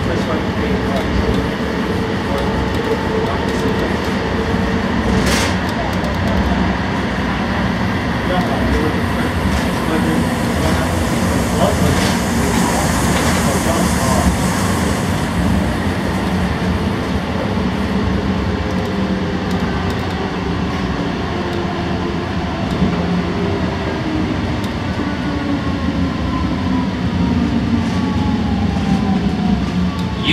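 Interior of an Alstom Citadis Spirit light-rail car on Ottawa's O-Train Confederation Line running between stations: a steady rumble of wheels on rail with an electric motor whine. Over the last several seconds the whine falls in pitch as the train slows into a station.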